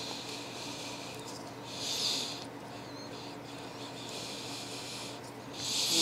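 Faint breathing near the microphone: soft hisses about every two seconds, over a low steady room hum.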